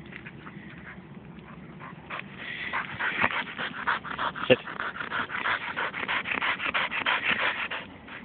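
Springer spaniel panting fast and hard close to the microphone, worked up from running through bracken. The panting grows louder from about two seconds in.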